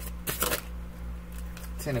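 A deck of tarot cards being shuffled or flicked, a brief flurry of card snaps about half a second in.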